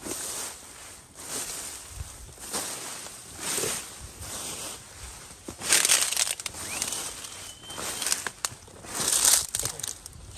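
Footsteps pushing through dense tall grass and weeds, the stems and leaves rustling and crunching in repeated bursts, loudest about six seconds in and again near the end.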